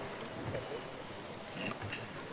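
Faint, indistinct voices over low hall room noise, with a few small clicks.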